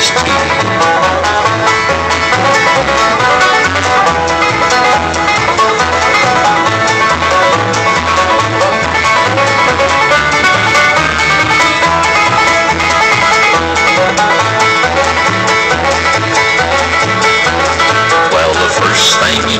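Bluegrass music led by a picked five-string banjo over guitar, with a steady bass beat; an instrumental stretch with no singing.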